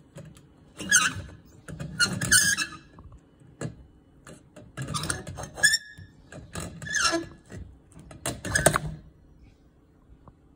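Burned-out recessed ceiling light bulb being twisted out of its socket by a strip of tape stuck to its face: about five short bursts of scraping and squeaking as it turns.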